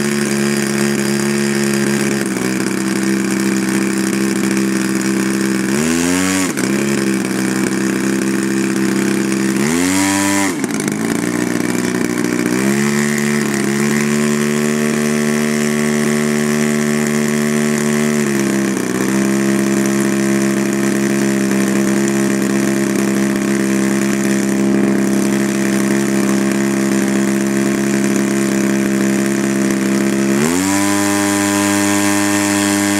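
The 111cc two-stroke gasoline engine of a large-scale Extra 300L model airplane running on the ground while held in place. It idles steadily, revs up briefly twice, about six and ten seconds in, then runs at a slightly higher idle from about twelve seconds in until nearly nineteen seconds, when it drops back.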